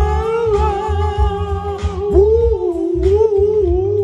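Men singing a long, slightly wavering held note, with a short dip and swoop about halfway, over music with a pulsing bass beat.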